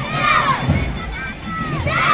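A crowd of schoolchildren chanting a slogan in unison while marching, the shouted chant repeating about every one and a half to two seconds.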